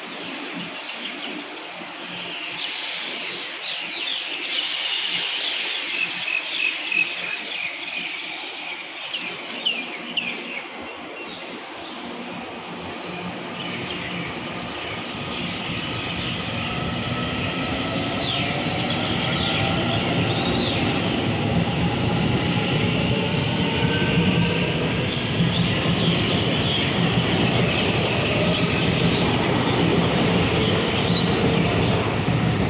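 Taiwan Railway EMU900 electric multiple unit pulling out of the station. Its traction motors give a whine that rises in pitch as it gathers speed, and the wheel rumble grows louder as the cars pass close by. There are two short hisses a few seconds in.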